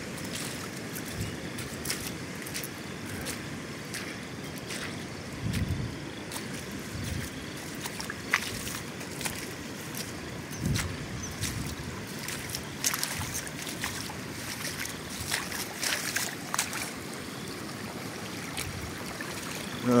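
Shallow floodwater running down a gravel road in rivulets, a steady trickling wash, with scattered crunching steps on the wet gravel.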